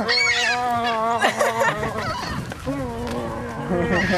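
Gulls calling over and over, short rising and falling cries. Under them a steady, low pitched tone is held for about a second, twice, once at the start and again near the end.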